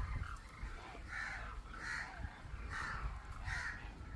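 A bird giving four short, harsh calls, about one every 0.8 s, starting about a second in, over a low rumble.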